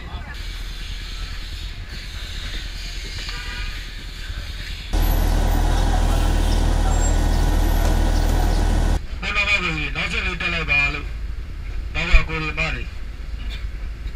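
City bus engines idling amid street noise at a crowded stop. About five seconds in, a loud, steady bus engine rumble starts and runs for about four seconds before cutting off. People's voices follow.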